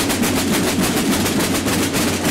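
A group of snare drums played together with wooden sticks: a fast, unbroken stream of strokes at steady loudness.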